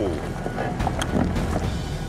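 Range Rover crawling down a steep, rocky slope under hill descent control, its tyres crunching over loose stones and gravel, with a few short knocks and music underneath.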